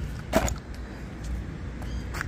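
Arrma Typhon TLR Tuned 1/8-scale electric RC buggy, with a brushless Max6 motor on 6S, giving a short sharp burst of motor and tyre noise about half a second in. After that there is only a low steady rumble.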